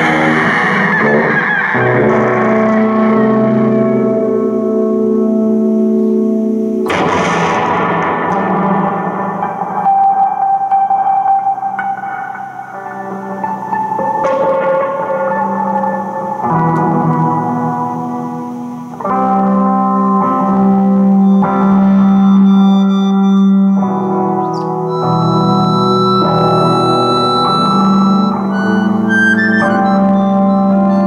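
Improvised live music: accordion and tuba holding sustained chords that shift every few seconds, with an electric guitar played through effects adding noise. A sudden noisy burst comes about seven seconds in.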